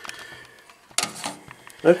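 A single sharp click about a second in, followed by a couple of faint clicks, against quiet room sound; a man's voice begins at the very end.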